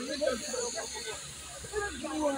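Distant voices of footballers calling out across a training pitch, over a steady high hiss that is strongest in the first second.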